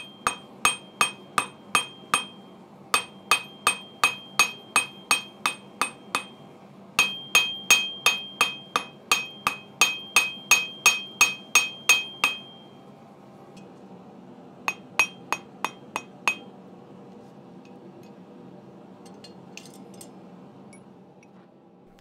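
Hand hammer striking a small hot steel leaf on a small anvil to spread it, about three blows a second, each with a bright ringing note from the anvil. The blows come in runs with short pauses and stop after about twelve seconds. A few more follow, then only a steady low hum remains.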